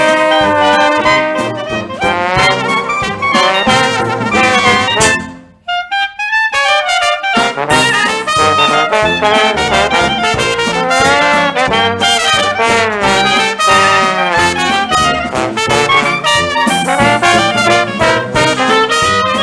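Recorded traditional jazz band playing, with trumpet and trombone leading the ensemble. About five seconds in the band stops, leaving a short solo phrase for a second or so, then the full ensemble comes back in.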